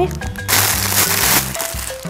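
Plastic mailer packaging rustling for about a second as a parcel is opened and a smaller plastic bag is pulled out, over background music.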